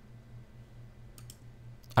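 A computer mouse button clicked about a second in, a quick sharp double click of press and release, over a low steady hum.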